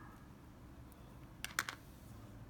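A quick run of three or four small, sharp clicks about a second and a half in, from hands handling the bait fish, line and hook on a tabletop, over a faint low room hum.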